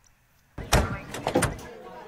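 Corrugated tin sheet door of an outhouse pulled open, rattling and scraping, starting suddenly about half a second in and dying away before the end.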